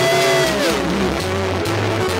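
A live worship band playing, with guitar over a steady bass line. A long note rises and falls near the start.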